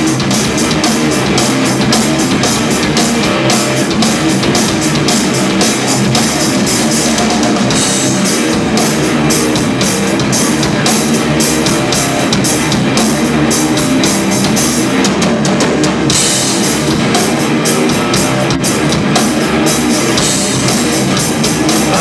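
Live stoner rock band playing an instrumental passage: electric guitar, bass guitar and a drum kit with constant cymbal and drum hits, loud and steady.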